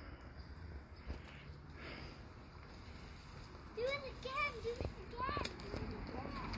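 A small child's voice making a few short sing-song sounds, each note rising and falling, about two-thirds of the way in, after a stretch of faint background.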